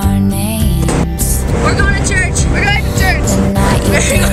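Pop song playing as background music. From about a second in, the rumble of a van on the road is mixed over it, heard from inside the cabin, with passengers' high voices.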